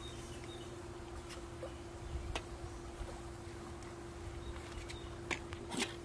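A quiet, steady low hum with a rumble beneath it, and a few faint short clicks and taps.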